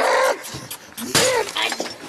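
A sudden crash of something shattering, about a second in, as someone is struck during a scuffle, with shouting around it.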